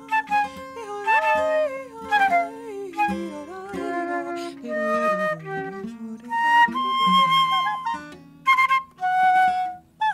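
Flute playing a free, improvised line of quick notes that slide and bend in pitch, over a lower held note, with acoustic guitar accompanying.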